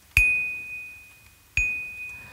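A high, pure bell-like note struck twice, about a second and a half apart, each ringing out and fading away, as part of a slow sparse piece of music.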